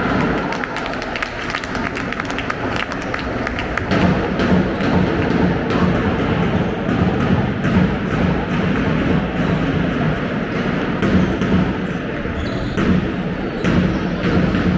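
Handball being bounced and dribbled on a sports-hall floor during play, a steady run of sharp thuds heard in the reverberant hall.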